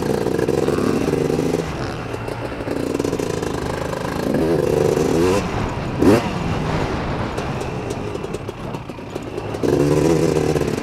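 Honda TRX250R ATV's two-stroke engine being ridden hard, revving up and down as the throttle opens and closes. It has a brief sharp rev about six seconds in and picks up strongly again near the end.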